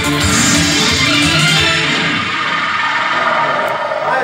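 Electronic keyboard music, a Korg synthesizer playing a song's accompaniment with a beat and bass line. The beat and bass drop out a little past halfway, leaving the higher keyboard tones sounding.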